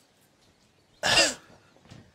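One short burst from a person's voice about a second in, like a cough or a clipped exclamation.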